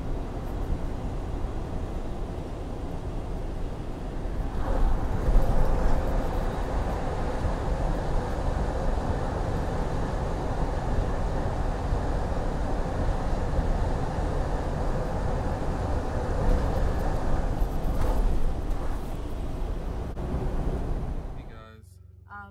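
Steady road and engine noise of a Freightliner Cascadia semi truck at highway speed, heard from inside the cab. About four and a half seconds in it turns louder and fuller as the truck enters a road tunnel, and it stays that way until it eases and cuts off near the end.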